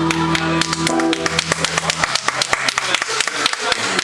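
A live band holding a final chord, which stops about two seconds in, while a small crowd claps; the clapping carries on after the chord ends.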